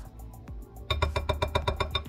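Wire whisk beating eggs and shredded cheddar in a glass mixing bowl: soft stirring at first, then from about a second in rapid ringing clinks of the wires against the glass, about ten a second.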